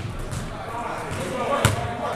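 Basketballs bouncing on a hardwood gym floor, with one sharp, loud bounce about three-quarters of the way through, over background chatter.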